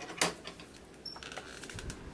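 A window being opened: a sharp click of the latch, then light ticks and rattles from the frame, with a brief high squeak about a second in.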